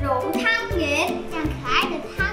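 Children's voices singing or chanting over cheerful backing music with a steady beat.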